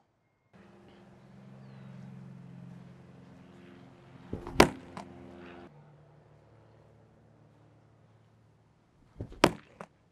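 A 16-ounce weighted ball thrown hard against a wall, hitting it with a sharp thud twice, about five seconds apart. A faint steady hum runs under the first half.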